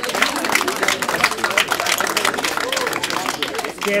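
Small crowd applauding with many scattered hand claps, while people talk over it.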